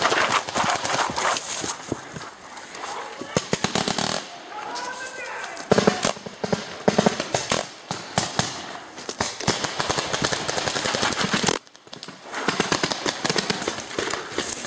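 Paintball markers firing in fast strings of sharp pops, many shots a second, from several players at once. The firing thins out briefly about four seconds in and stops for a moment near the end.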